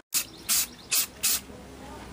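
Aerosol spray can of clear enamel giving four short bursts of hiss, each under a quarter of a second, as a radio tuning capacitor is coated.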